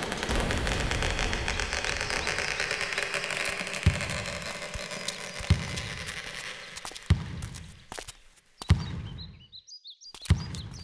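A dense rushing hiss that slowly fades away, cut by four deep booming thuds about a second and a half apart, typical of a suspense sound-design score. Near the end it drops almost to silence, with a few faint bird chirps.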